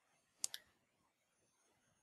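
Two clicks in quick succession about half a second in, as of a computer mouse button; otherwise near silence.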